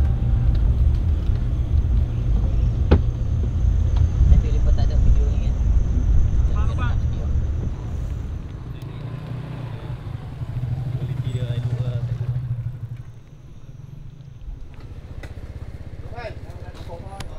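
Small motorcycle engine running with a low rumble of wind and road noise. Partway through, a passing motorcycle's engine note rises and holds steady for about two seconds, then the level drops sharply.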